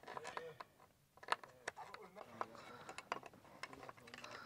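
Quiet, scattered clicks and taps of hand work on a pulley being fitted to the wooden crossbar of a well frame, with faint voices.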